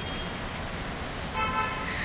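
Steady hum of city street traffic with a car horn tooting briefly about one and a half seconds in.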